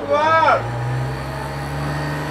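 A man's voice trails off briefly at the start, then a steady low engine-like hum slowly rises in pitch.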